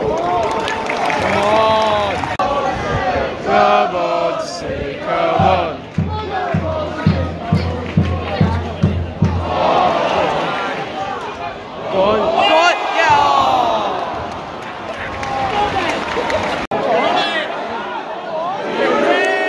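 Football crowd singing and chanting in the stands, with a run of low, even thumps of about two to three a second for a few seconds in the middle. The voices swell louder about two-thirds of the way through.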